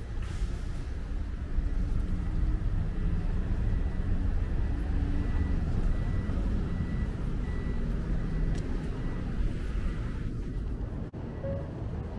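Steady low rumble of vehicle engines and street traffic, with a faint high beep repeating about once a second midway through.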